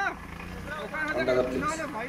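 Men's voices talking in the background over a steady low hum.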